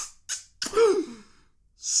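A man making chef's-kiss noises with his lips: a couple of quick lip smacks, then about half a second in a breathy voiced sound that falls in pitch and fades.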